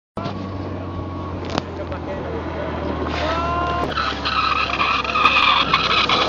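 Single-engine light aircraft's propeller engine running as the plane rolls along the runway: a steady low drone, joined about three seconds in by a high whine, growing louder.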